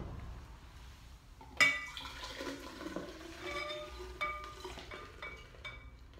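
Glass beer bottles clinking together, with a sharp ringing clink about a second and a half in, then beer glugging from several bottles poured at once into a giant wheat-beer glass, with a few more light glass clinks near the end.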